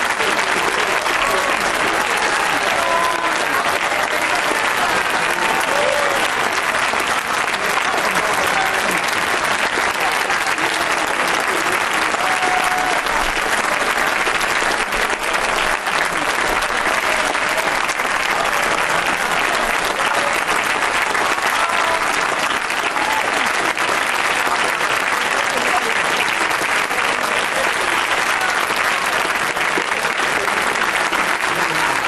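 Sustained applause from a chamber full of Members of Parliament: dense, steady clapping with a few voices mixed in.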